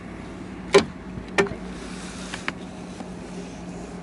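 Hard plastic clicks of the hinged flip-top cap on a Tesla's windshield washer fluid filler being flicked open: one sharp click under a second in, a second click just over half a second later, then two faint ticks.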